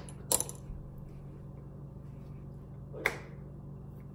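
Two sharp finger snaps about three seconds apart, over a steady low hum.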